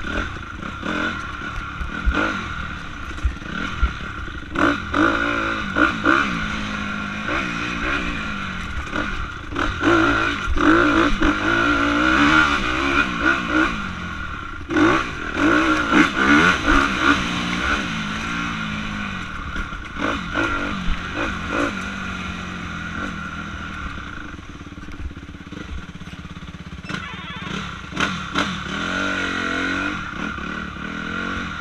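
Honda CRF250R's single-cylinder four-stroke engine revving up and down again and again with the throttle as the dirt bike is ridden hard over rough trail, loudest in the middle stretch, with frequent knocks and clatter from the bike over the bumps.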